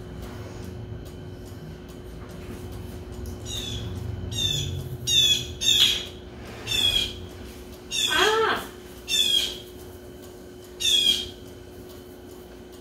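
A bird calling: a run of about eight short, high calls that fall in pitch, irregularly spaced, starting a few seconds in, one of them lower and fuller than the rest.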